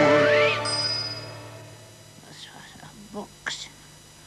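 The closing note of a children's song about the apostrophe, with a rising glide, then a bright ding about half a second in that rings for about a second while the music fades out. A few faint, short squeaky sounds follow near the end.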